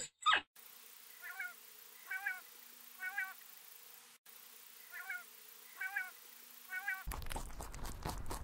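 Quail calling: a short, wavering call repeated about once a second, six times, over a faint hiss. About seven seconds in it gives way abruptly to loud rustling and crunching.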